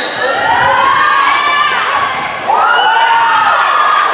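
Volleyball spectators and players cheering and shouting in high, drawn-out yells, several voices at once, growing louder about two and a half seconds in.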